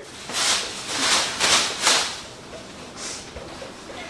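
A person breathing hard and quickly through the mouth, four or five short hissing breaths in a row, then a fainter one about three seconds in, a typical reaction to the burn of the extremely hot chip.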